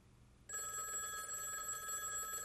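Telephone bell ringing, starting suddenly about half a second in: the rapid metallic trill of an electromechanical phone bell.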